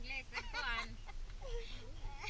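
Women's voices talking and laughing.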